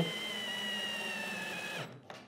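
DeWalt cordless drill/driver whining steadily as it drives a screw into wood, its pitch sinking slowly as the screw draws tight, then stopping abruptly just before the end.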